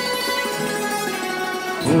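Background music led by a plucked string instrument, swelling louder just before the end.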